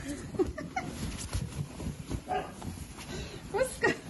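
English bulldog making a string of short grumbling, whiny vocalizations, one rising in pitch near the end, sounding cross.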